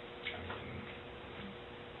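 Quiet room tone in an interview room: a faint steady hum with a couple of small ticks near the start.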